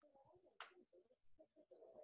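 Near silence: faint room tone with a soft click about half a second in and faint indistinct background sounds.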